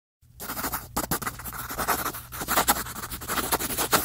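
Pencil scratching rapidly on paper, a fast run of scratchy sketching strokes over a low steady hum.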